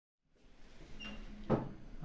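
Silence, then quiet room tone comes in, with a single sharp knock or click about a second and a half in.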